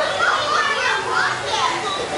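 Young children's voices: high-pitched, excited chatter and exclamations with pitch sliding up and down.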